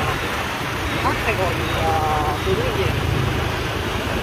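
Steady rumble of a vehicle driving through city street traffic, with faint voices talking underneath.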